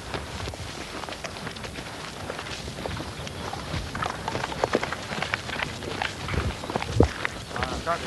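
Footsteps and scuffs on dry grass and loose rock, an irregular run of small knocks, with one louder knock about seven seconds in.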